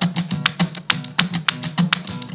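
Live electro-pop band playing an instrumental passage between vocal lines: a fast, even run of sharp clicking beats over a low, steady bass line, with no singing.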